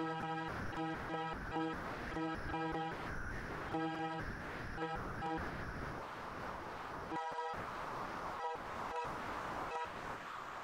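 A Lambdoma harmonic keyboard holds a steady electronic tone with many overtones, sounding the 963 solfeggio frequency. The tone keeps breaking up in brief dropouts. About halfway through it thins away, leaving a hiss that still cuts out now and then.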